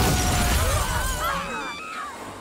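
Cartoon soundtrack: a loud crash with shattering, with wavering cries over it, fading away over the two seconds.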